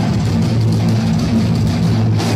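Heavy metal band playing live and loud: electric guitars, bass and drum kit in an instrumental passage, with no vocals.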